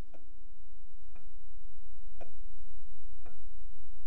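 A clock ticking about once a second, each tick sharp and short, over a steady low hum.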